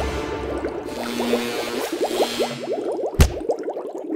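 Title-card sound effects: a rapid stream of quick rising, bubbly blips like bubbling liquid over a held low tone, with a single heavy thud about three seconds in.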